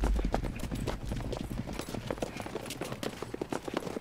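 Horse hooves clip-clopping: a quick, irregular run of short knocks, with a low rumble fading out in the first half second.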